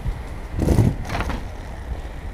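Skate wheels rolling over paving while skating along, with wind buffeting the microphone as a low rumble. A louder rush of noise comes about half a second in.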